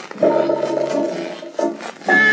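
Telephone ring used as a sound effect at the start of an early-1960s record. It is a buzzing, rasping ring in bursts: one lasting a little over a second, then a short one near the end.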